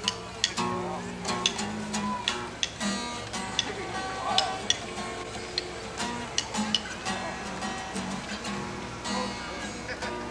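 Acoustic guitar being picked, a steady run of plucked notes with sharp pick attacks.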